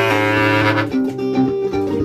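Bass clarinet playing: a long, low note held for about a second, then shorter notes higher up, over a plucked-string accompaniment.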